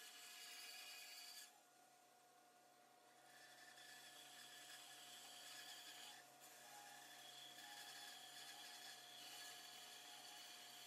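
Very faint band saw running and cutting through a thick wooden board, heard as a steady faint hum; the sound dips almost to nothing about a second and a half in, for about two seconds.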